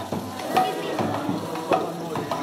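Kirtan percussion in a crowded room: three sharp metallic strikes about 0.6 seconds apart, each leaving a short ringing tone, typical of hand cymbals (kartals), over a busy, clattering din.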